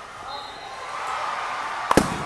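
A baseball bat hitting a pitched ball, one sharp crack near the end, over background voices.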